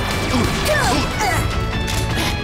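Cartoon laser-gun blasts: a rapid string of short zaps, each falling in pitch, with impact crashes, over dramatic action music.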